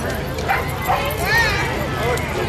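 A dog barking and yipping a couple of times over people talking.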